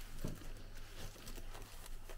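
Faint rustling of a plastic bag liner and light, scattered taps as a hand rummages through a box of Jaffa cakes.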